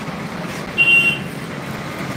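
Steady road-traffic noise with a short, high electronic beep about a second in, like a vehicle's warning beeper.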